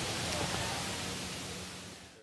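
A steady hiss of even noise that fades down through the second half.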